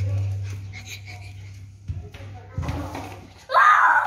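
Indistinct voices with a couple of knocks, then a loud, high cry near the end.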